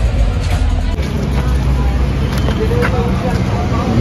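Street traffic noise: a steady low rumble of passing vehicles with scattered background voices.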